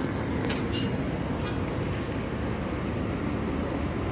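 Steady low rumble of vehicle noise, even and unbroken.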